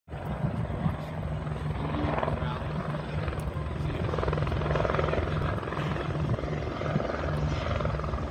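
Twin-engine Airbus Helicopters AS355 Écureuil 2 helicopter flying at a distance: a steady, continuous rotor beat from the main rotor and its two turbine engines.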